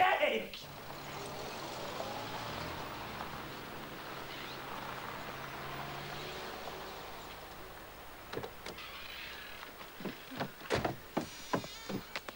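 A motor vehicle running past, a low steady engine drone that swells and then fades over several seconds. In the last few seconds come scattered footsteps and knocks.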